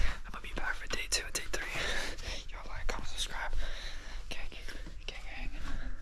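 A man whispering close to the microphone, his words breathy and unvoiced.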